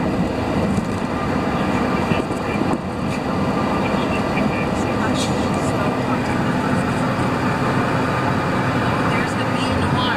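Steady road and engine noise heard from inside a passenger van's cabin as it drives along a highway.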